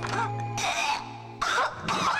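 Film background music with a man coughing, in noisy bursts about half a second in and again from about a second and a half.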